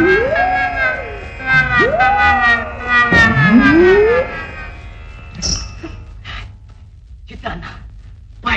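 Comic film background music: a held chord with three sliding, siren-like glides that rise and fall over about four seconds, then a few short scattered hits.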